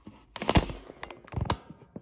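Handling noise from a phone being picked up and moved, a hand rubbing over its microphone, with two knocks, about half a second in and about a second later.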